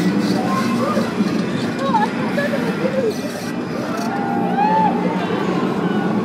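Riders on The Smiler, a Gerstlauer Infinity roller coaster, yelling and screaming in several rising and falling cries over the steady rumble of the train on its track.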